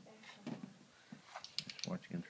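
Sliding glass door rattling and clicking in its frame as a sulcata tortoise shoves its shell against it. There are a few soft knocks at first and a quick run of sharp clicks in the second half.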